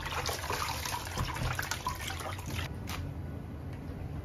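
Hands swishing and rubbing leafy greens in a plastic basin of water, with splashing and dripping; it stops about three seconds in.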